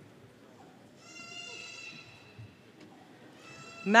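Two faint, high-pitched voice calls: one lasting about a second, starting about a second in, and a shorter one near the end.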